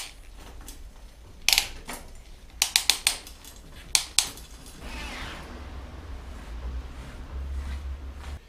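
Bicycle drivetrain being checked on a repair stand: several sharp clicks and knocks from handling the bike, then from about five seconds in a steady whir as the cranks are turned and the chain and gears run.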